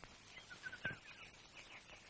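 Faint short bird chirps over a low hiss, with a sharp click a little under a second in.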